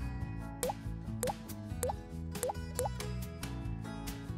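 Background music with a steady beat, over five short rising 'bloop' sound effects, roughly every half second. The bloops are cartoon drip sounds that stand for drops of food coloring falling onto milk.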